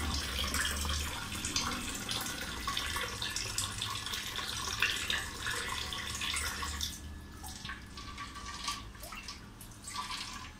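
Water running out of a hose and splashing into a partly filled water tank, with many small spatters. The splashing thins and grows quieter about seven seconds in.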